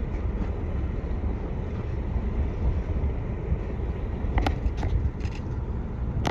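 Wind buffeting the microphone on a boat on open water: a steady low rumble that rises and falls, with a couple of short, sharp knocks about four and a half seconds in.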